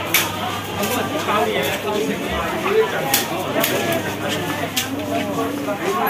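Crowd of shoppers talking at once, a dense babble of many voices, with frequent short clicks and clatters through it.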